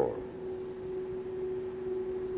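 Steady electrical hum, two low pitches held without change, over a faint even hiss from the recording.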